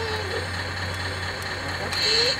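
Radio-controlled model construction machines running: an O&K model excavator and a model tipper truck, giving a steady low hum with a constant high whine.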